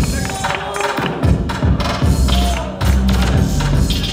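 Hip hop beat played loud over a sound system, with deep bass notes and sharp drum hits, the bass held in longer notes in the second half.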